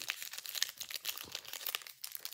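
Foil Pokémon booster pack wrapper crinkling as it is handled, a quick run of sharp crackles throughout.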